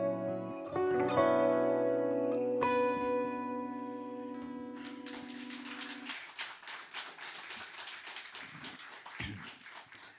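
Acoustic guitar playing the closing notes and chords of a song, the last chord ringing and dying away. About halfway in, audience applause takes over and runs on until just before the end.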